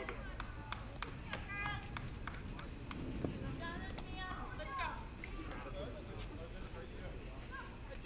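Indistinct distant voices of players and spectators chattering around a softball field, with a steady high-pitched tone held underneath throughout.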